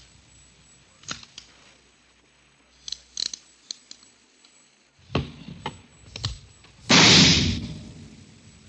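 A .38 caliber revolver is test-fired into a ballistics box: a few scattered clicks and knocks of handling, then one loud shot about seven seconds in that dies away over about a second.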